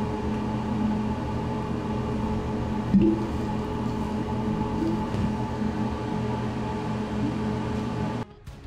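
Steady hum with one sharp pop about three seconds in. The pop comes from ammonia flashing as it oxidizes on red-hot chromium(III) oxide in a flask of ammonia and oxygen.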